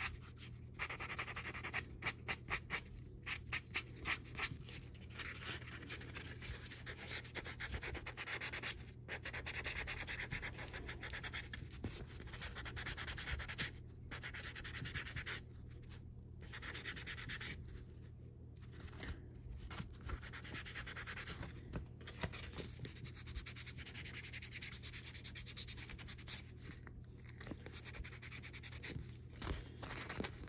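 Light hand sanding of a dried edge-paint base coat on a tab's edge with a fine sanding sponge, smoothing out lumps before the colour coat. It starts with quick short strokes, several a second, then goes on as longer stretches of rubbing broken by brief pauses.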